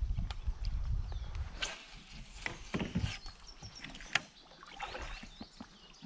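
Kayak on a river: light knocks and clicks against the hull and water sounds, over a low rumble in the first two seconds. A few faint high chirps come later.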